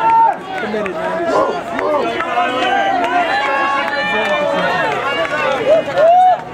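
Trackside spectators yelling and cheering for the runners, many voices overlapping, some shouts drawn out.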